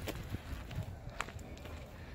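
Faint, distant children's voices from a school, with light knocks and a sharp click a little over a second in.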